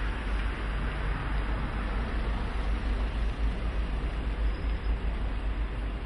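Steady outdoor city noise: a low rumble with a hiss over it, like street traffic, with no distinct events.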